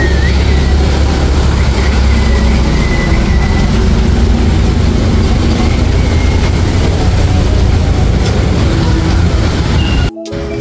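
Traffic on a rain-wet street: cars and motorbikes passing close, their engines and tyres hissing on the wet road over a steady deep rumble.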